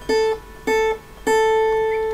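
Guitar's high E string plucked three times on the same note at the fifth fret, about half a second apart, the last note left ringing for about a second.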